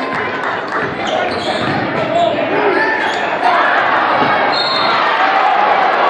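Basketball game sounds in a gymnasium: a ball bouncing on the hardwood floor under many voices of the crowd talking, echoing in the large hall.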